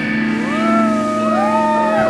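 Electric guitars' last chord ringing out through the amps after the drums stop, while audience members whoop, two long calls rising and then held from about half a second in.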